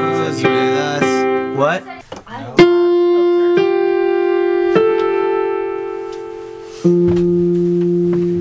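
Electronic keyboard played with both hands: a run of quick chords, then after a short break a loud chord is struck about two and a half seconds in and held. A few more held chords follow, each fading slowly as it rings out.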